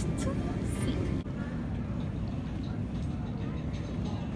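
Faint voices for about a second, then a sudden change to the steady low rumble of an airport terminal: ventilation hum and distant background noise.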